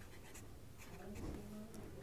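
Faint scratching of a pen on paper as numerals are written on a workbook page.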